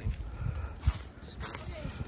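A few dull, low thumps, the clearest about a second in, over a low rumble, with faint voices in the background.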